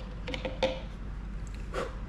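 Metal teaspoon clicking and tapping against the neck of a plastic water bottle while baking soda is spooned in: a few light clicks early, then one louder tap near the end.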